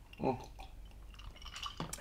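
A man sipping a drink from a glass, with faint mouth and swallowing sounds, then a light knock near the end as the glass is set down on a tray.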